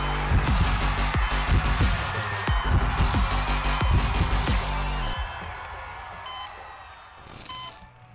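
Advertisement backing music with a heavy, fast bass beat that stops about five seconds in, leaving a fading tail.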